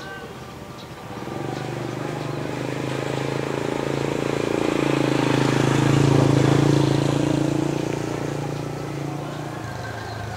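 A motor vehicle's engine passing nearby: a steady hum that grows louder from about a second in, peaks around the middle, then fades away near the end.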